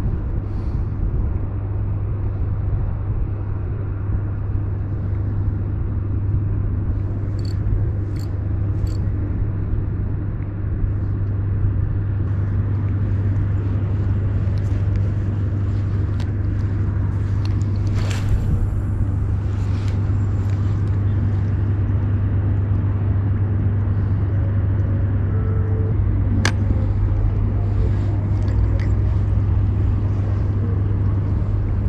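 Steady low drone of a large ship's engine, unchanging throughout, with a few short clicks in between.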